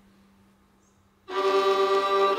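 The tail of a held violin note fades out to near silence. About a second and a quarter in, the fiddle and band come in suddenly and loudly on a sustained chord.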